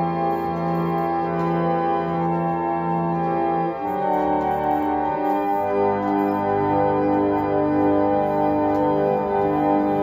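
A 120-year-old foot-pumped reed organ (pump organ) playing slow sustained chords. The chord changes about four seconds in, then the notes move more often from about five and a half seconds.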